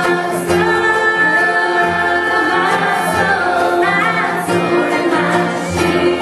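Bluegrass gospel band playing: a female lead voice sings with harmony voices over plucked upright bass notes and acoustic guitar.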